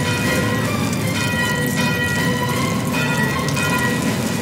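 Orchestral film score: held high notes that shift every second or so, over a low, dense noisy rumble.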